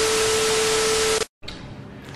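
TV static sound effect: a hiss with one steady tone through it, cutting off abruptly about a second and a quarter in. Faint room tone follows.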